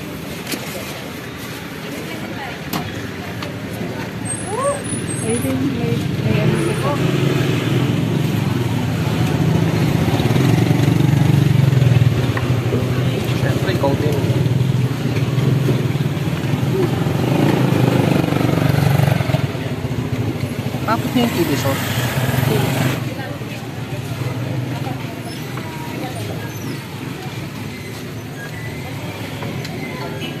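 Roadside traffic: a motor vehicle engine running close by, building over the first ten seconds or so and easing after about 23 seconds, with people talking in the background.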